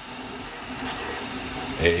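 Flashforge 3D printer running mid-print: a steady whir from its cooling fans and motors as the print head moves over the bed.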